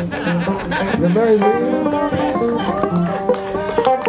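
A live string band jamming: fiddle playing sliding notes over electric bass and a plucked string instrument, with a brief spoken word over it.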